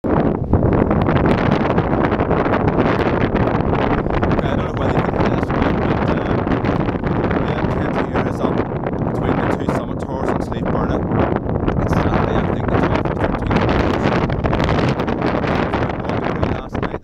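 Strong gusting high wind buffeting the microphone: a loud, continuous rush with rapid, irregular blasts throughout.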